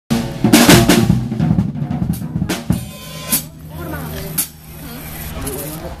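Acoustic drum kit played fast: rapid snare, tom and kick hits with loud cymbal crashes. The playing thins to a few single hits and crashes in the second half.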